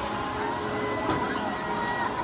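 Kiddie helicopter ride running: a steady mechanical hum with a thin, steady whine, over faint crowd voices.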